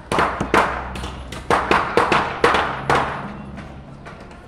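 Wooden formwork boards being knocked loose from concrete columns: about eight sharp, irregular wooden knocks and bangs within three seconds, dying away near the end.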